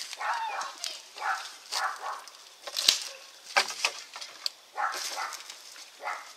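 Wooden boards being handled and shifted on the ground: a few sharp knocks and clicks, the loudest about three seconds in.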